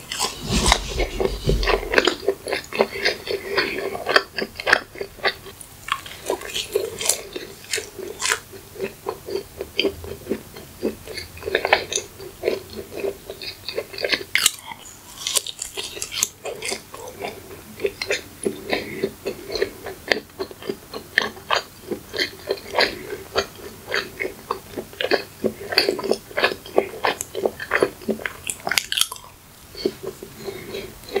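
Close-miked biting and chewing of a soft maple-syrup muffin: a bite at the start, then a steady run of moist, clicking mouth and chewing noises.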